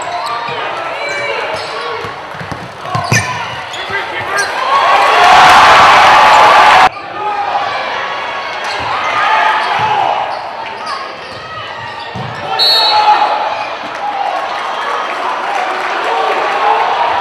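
Basketball game sound in a gymnasium: crowd voices and shouts over ball bounces and sharp knocks on the hardwood. The crowd noise swells and cuts off suddenly about seven seconds in. A brief referee's whistle sounds near the end.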